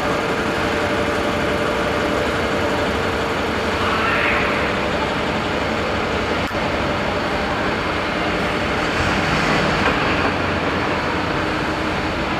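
Steady urban vehicle and traffic noise picked up by a handheld camera's microphone, with a short click about six and a half seconds in.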